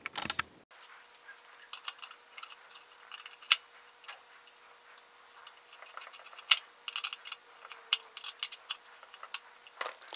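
Screwdriver turning in the crane screw of a Rock Island M200 .38 Special revolver's steel frame: irregular small metallic clicks and ticks of the tip and screw, with two sharper clicks about three and a half and six and a half seconds in.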